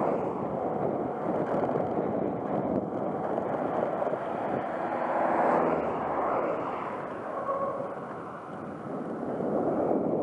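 Wind rushing over an action camera's microphone on a road bike at speed, mixed with tyre noise on asphalt. A faint hum with a pitch rises out of it about halfway through, and the noise dips briefly near the end as the bike slows while coasting.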